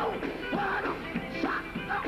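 Live gospel quartet music: the lead singer delivers short, bending vocal phrases into a microphone over the band.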